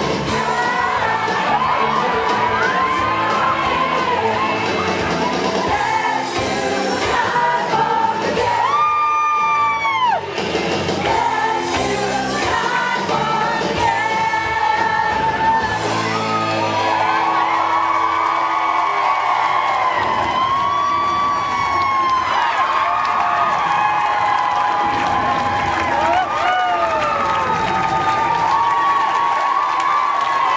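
Loud pop music with singing over an audience cheering and whooping, including one prominent rising-and-falling whoop about nine seconds in.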